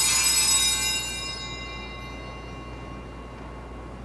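Altar bells rung at the elevation of the consecrated host. The ringing stops about a second in and fades out over the next second.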